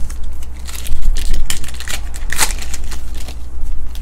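A trading card pack's wrapper crinkling and tearing as it is ripped open by hand, in irregular crackles, the loudest about halfway through, over a steady low hum.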